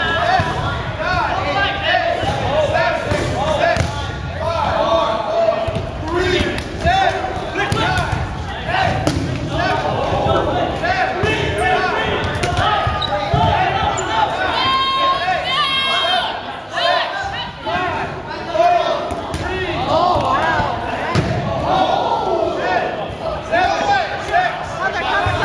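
Dodgeballs being thrown, smacking and bouncing on a hardwood gym floor, with a steady din of players and spectators shouting and calling out.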